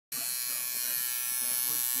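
Electric tattoo machine buzzing steadily as its needle works ink into the skin of a chest.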